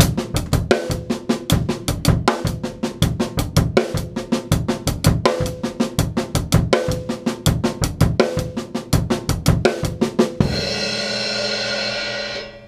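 Tama drum kit playing a single-paradiddle groove up tempo: right hand on the hi-hat doubled by the bass drum, left hand on the snare, in a steady sixteenth-note pattern. About ten seconds in it ends on a cymbal crash that rings on.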